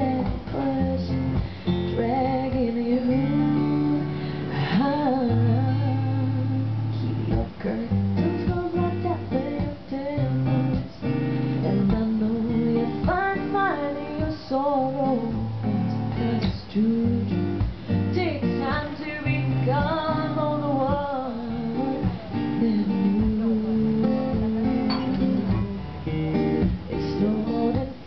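A woman singing live to her own strummed acoustic guitar. Her sung phrases come and go over a steady strummed accompaniment.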